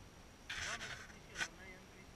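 A few brief words of speech close to the microphone, with one short sharp noise about two-thirds of the way in.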